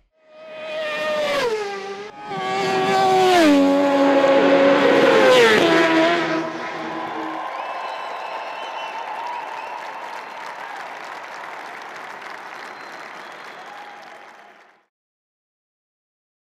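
Racing motorcycle engines passing at high speed, each engine note falling in pitch in steps as it goes by. They are followed by a steadier rushing noise that cuts off suddenly near the end.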